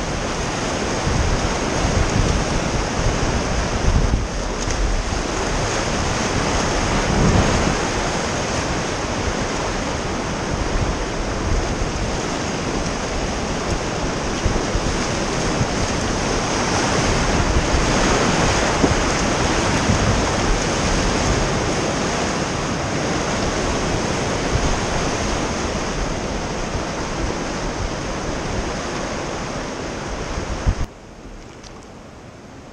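River whitewater rushing loudly and steadily around a raft running a rapid, fading a little toward the end as the water calms.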